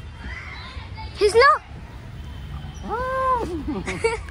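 A child's high voice calling out twice: a short, loud rising shout about a second in, then a longer drawn-out call near three seconds, over a low rumbling background.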